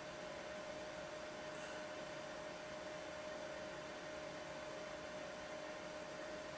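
Steady hiss with a faint, steady hum underneath: the noise floor of a home narration recording (microphone hiss and electrical hum) during a pause in speaking.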